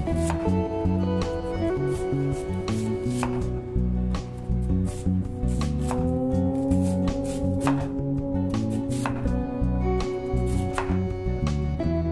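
Knife cutting through a raw sweet potato into thick rounds, each stroke ending in a sharp knock on a wooden cutting board, about once every second or two. Background music plays under the cuts.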